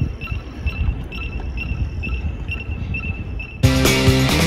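Crickets chirping in a steady series of short high chirps, about three a second, over a low rumble. Loud rock music cuts in suddenly near the end.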